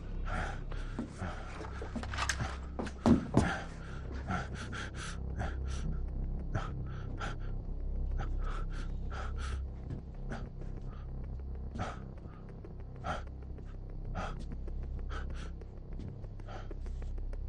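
A person breathing tensely in short, quick breaths, irregularly about one or two a second, over a low steady rumble. A louder knock or two comes about three seconds in.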